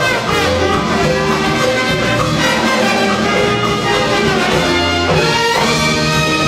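Live salsa orchestra playing, its brass section of trumpets and trombones to the fore over piano, congas and drum kit.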